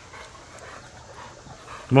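Dog panting softly, a steady run of short, quick breaths.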